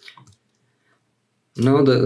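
A few faint computer keyboard and mouse clicks near the start, then a voice begins speaking about a second and a half in.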